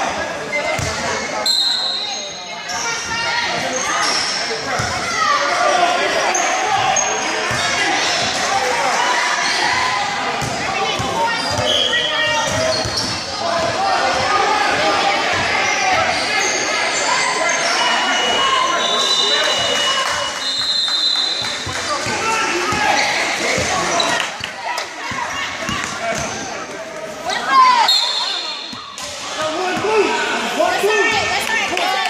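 A basketball bouncing on a gym floor during a game, with spectators' and players' voices filling an echoing hall.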